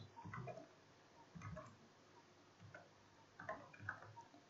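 Faint computer keyboard typing: a few short, scattered clusters of keystrokes.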